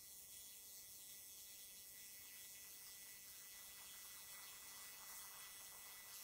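Near silence: faint, steady room tone with no distinct sound.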